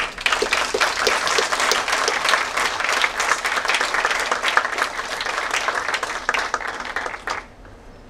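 Audience applauding in a lecture hall, many hands clapping steadily for about seven seconds and then dying away near the end.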